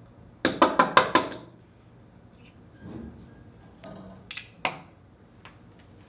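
Deer hair being evened in a hair stacker tapped on the tying bench: a quick run of about five sharp knocks. A couple of lighter clicks follow near the end.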